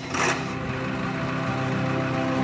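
A Ford Super Duty's 7.3 Power Stroke turbodiesel V8 running steadily as the truck pulls away, under background music.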